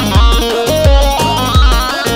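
Live dance music from a Yamaha Genos arranger keyboard: a melody line stepping from note to note over a heavy, steady bass-drum beat that lands about every half second.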